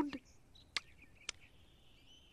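A quiet pause holding two faint, sharp clicks a little over half a second apart, then a faint, thin, high steady tone from about halfway through.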